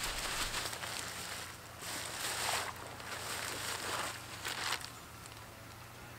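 Plastic bag crinkling and rustling in several soft bursts, about one a second, as whole fish and fish liquid are shaken out of it onto a hay-covered compost pile.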